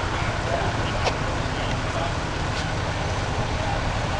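Outdoor street ambience: a steady low rumble of traffic and wind with faint, distant voices, and a single sharp click about a second in.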